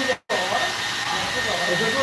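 Handheld hair dryer blowing steadily, a rushing sound with a thin high whine running through it, drying damp hair. The sound cuts out completely for a split second just after the start, then carries on.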